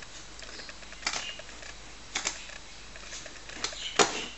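Computer mouse button clicking as menus are pulled down: three short clicks about a second apart, over a low steady hum.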